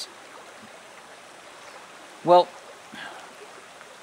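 Shallow river running over rocks, a steady, even rush of water.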